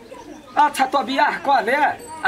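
A person's voice in a sing-song pitch that rises and falls in arches, starting about half a second in.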